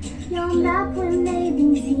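A young woman singing a few short held notes, ending on a longer sustained note.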